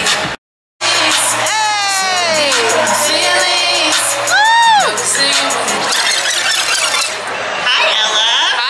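A woman singing live through a PA over backing music, her voice sliding through long falling and arching runs, with a crowd cheering. The sound drops out for a split second just after the start.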